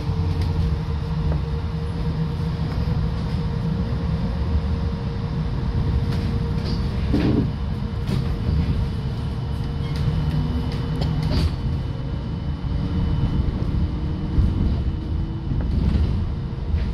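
Trolleybus running, heard from inside the passenger cabin: a steady low rumble with a constant electric hum. A few short knocks come from the trolley poles on the overhead wires, about seven, eleven and fourteen seconds in.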